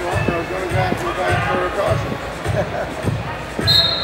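Arena ambience in a large hall: crowd chatter, a low thump repeating about every half second, and a short high whistle blast near the end.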